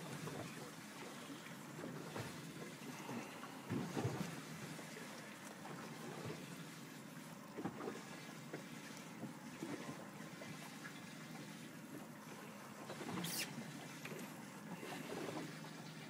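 Steady wind and water noise aboard a boat at sea, with a couple of brief knocks, one about four seconds in and one near the end.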